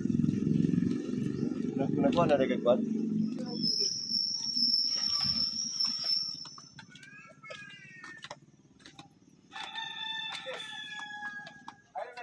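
A rooster crowing several times, ending with a long, level held crow near the end, while people's voices carry in the background. A low rumble sits under the first few seconds.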